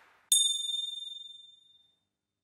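A single high, bell-like ding that rings out and fades away over about a second and a half.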